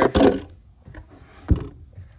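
Carpeted storage-compartment lid on a bass boat's rear deck being handled and swung shut: a brief rustle at the start, then a single dull thud about one and a half seconds in as the lid closes.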